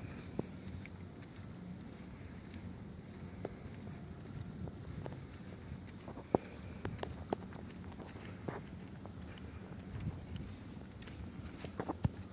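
Footsteps and phone-handling noise as someone walks across gym mats and carpet: scattered light taps and clicks over a low steady room hum, with one sharper tap about six seconds in.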